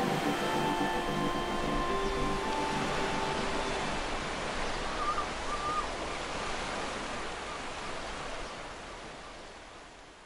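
The last held notes of a song die away, leaving a steady rush of sea surf that fades out slowly to silence.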